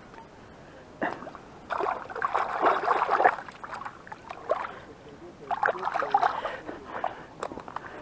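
Hands splashing and swishing in shallow river water, in two spells of a second or two each.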